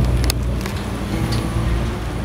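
A steady low engine hum, with a couple of faint clicks about a quarter second in.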